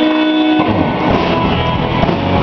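Live rock band playing: electric guitars over bass and drum kit. A held chord gives way to busier playing with drum hits about half a second in.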